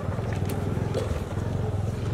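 A small engine running steadily, a low, even, fast-pulsing hum.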